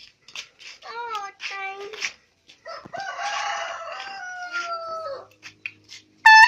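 Homemade air horn (funnel horn fed from a pumped soda-bottle air tank) sounding: two short toots, then a longer, rougher blast that sags in pitch as it dies away, close to a rooster's crow.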